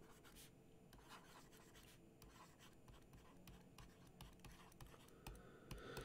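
Very faint scratching and tapping of a stylus writing on a tablet, in many short strokes.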